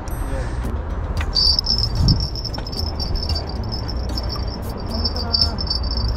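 An insect trilling in a steady, high, finely pulsing buzz that starts about a second in, over a low steady rumble.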